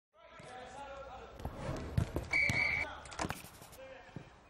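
Edited football sound montage: several sharp thuds of a football being kicked and bounced, a short steady whistle blast a little past halfway, and voices underneath.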